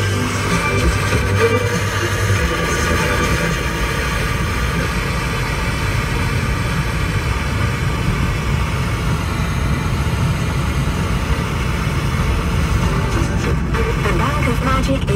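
Music from a car radio playing over steady road and engine noise inside a car's cabin.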